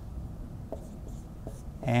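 Dry-erase marker writing on a whiteboard: faint strokes with a few light ticks.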